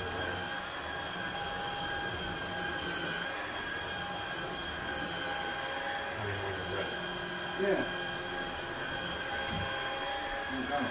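Upright vacuum cleaner with a dust canister running steadily, its motor making a constant whine with several high tones over a rushing noise. A short, sharper sound comes about eight seconds in.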